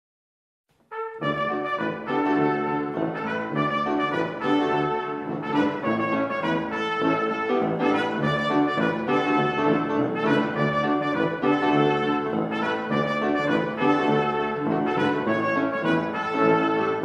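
Brass instruments playing music together, starting abruptly about a second in after silence.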